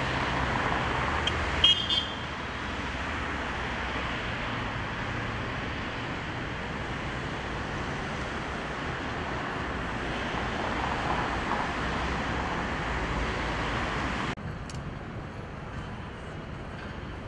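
Steady road traffic noise from passing and idling cars. About two seconds in there is one brief, sharp, loud sound, and near the end the noise suddenly drops to a quieter level.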